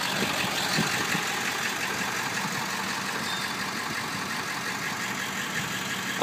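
Ford F-350's 7.3-litre Power Stroke V8 turbodiesel idling steadily.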